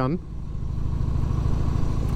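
A 2001 Harley-Davidson Heritage Softail's Twin Cam 88B V-twin engine running while riding. It makes a low, even rumble that grows a little louder during the first second.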